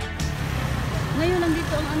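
Road traffic: the steady rumble of passing cars and motorbikes. Background music cuts off just after the start, and a voice starts talking over the traffic about a second in.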